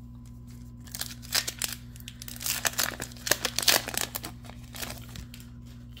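A foil Yu-Gi-Oh booster pack wrapper being torn open and crinkled, crackling in a busy run from about a second in until about four and a half seconds in, over a steady low electrical hum.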